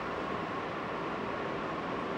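Steady, unchanging rushing noise with a faint high steady hum, with no events in it.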